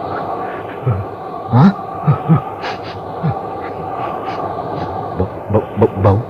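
Radio-drama wind sound effect, a steady eerie drone, with a few short low sounds over it.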